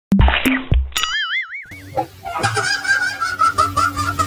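Cartoon sound effects laid over a comedy clip: a short honk, then a wobbling warble lasting under a second. About halfway through, background music with a repeating melody starts.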